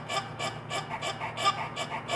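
A run of short, evenly repeated calls, about four a second, from the sound of a video playing on a phone.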